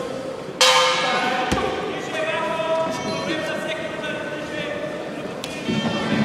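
A bell rings out once, suddenly and loudly, about half a second in to start the Muay Thai round, its ring hanging in the large hall while voices shout over it.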